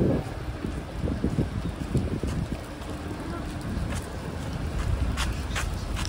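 Wind buffeting the microphone over a low rumble of city street traffic, with a couple of short clicks about five seconds in.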